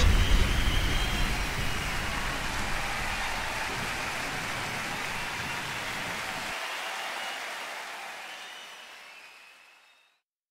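The closing tail of a hands-up dance track: a wash of white noise over a deep bass rumble after the last hit. The bass cuts off about six and a half seconds in, and the noise fades away to nothing at the end.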